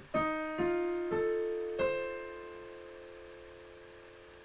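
Digital piano playing a right-hand F7 chord voicing, its four notes struck one after another over about two seconds, then held and fading.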